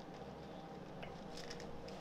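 Faint clicks and scrapes of a spoon in a bowl of cereal as it is scooped: a light click about a second in, then a few more shortly after.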